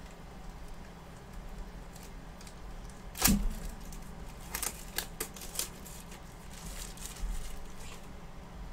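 Plastic shrink wrap being picked at, torn and peeled off a metal trading-card tin, with crinkling and crackling. A sharp knock about three seconds in is the loudest sound.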